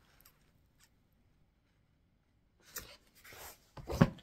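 A couple of seconds of near silence, then stiff cross-stitch fabric rustling and crackling as it is handled, ending in a single loud thump.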